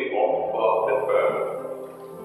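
Music with singing, growing quieter near the end.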